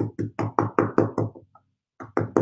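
An embossing ink pad in its plastic case is patted rapidly against a large rubber background stamp to ink it, making an even run of knocks at about five a second. The knocking stops briefly near the end.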